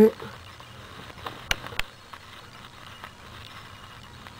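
Low steady background hiss with a few short, sharp clicks in the middle, the two clearest about a second and a half in.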